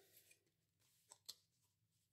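Near silence with faint paper handling: two soft ticks a little over a second in as fingers move paper pieces tucked into a handmade journal.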